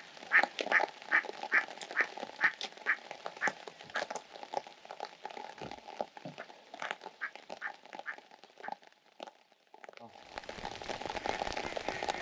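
A duck quacking in a fast series of short calls, about three a second, that stops about nine seconds in. Rain on the water's surface follows as an even patter near the end.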